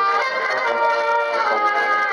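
A small traditional folk band playing live: a button accordion with clarinet, trumpet, acoustic guitar and a tuba carrying the bass line.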